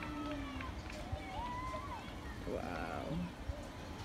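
Faint voices of people talking at a distance, scattered background chatter with no single loud event.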